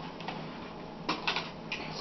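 Small clicks and rustles of packaging and accessories being handled, a few taps about a second in and again near the end, over a low steady hum.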